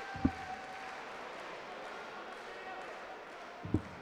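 Two darts thudding into a bristle dartboard, about three and a half seconds apart, over a steady murmur of arena crowd noise.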